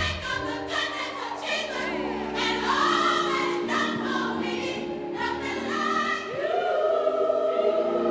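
Gospel choir singing long held notes in several parts, with a voice gliding up to a higher held note about six seconds in.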